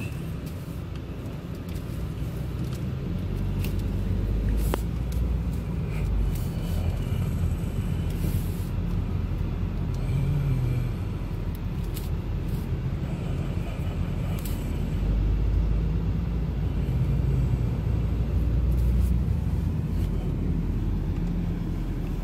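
Engine and road noise inside a car's cabin while driving in traffic: a steady low rumble that swells and eases as the car speeds up and slows.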